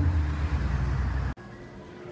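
Steady low outdoor rumble of traffic noise. A little over a second in it cuts off abruptly and gives way to much quieter indoor room tone.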